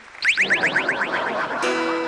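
Electronic TV-show sound effect: a quick run of rising chirps, about ten a second, then a held synth chord that starts near the end.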